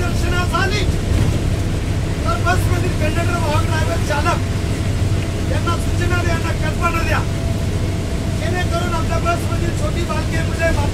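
Steady low rumble of a bus engine and running gear heard inside the passenger cabin, under a man's loud voice speaking in bursts throughout.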